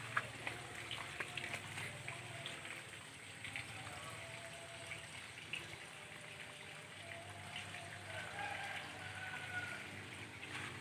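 Faint trickling and dripping of water in a small ditch, with scattered small irregular ticks.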